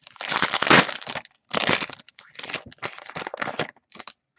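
Foil trading-card pack wrapper crinkling as it is torn open and crumpled in the hands, in four bursts of rustling.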